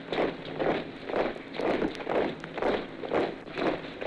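A body of soldiers marching in step, their footfalls landing about twice a second in an even cadence. It is an old 78 rpm sound-effects recording, dull-toped with a low treble cutoff and a steady surface-noise hiss.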